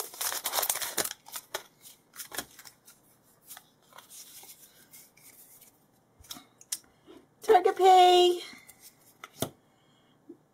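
A foil booster-pack wrapper crinkling and tearing for about the first second. Then come soft, scattered rustles and clicks as the trading cards are handled.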